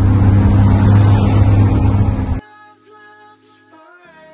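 Heavy truck engine running steadily at highway speed, heard from inside the cab with road noise, cut off abruptly about two and a half seconds in. Soft music follows.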